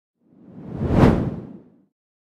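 A whoosh sound effect for the title transition. It swells to a peak about a second in, then dies away.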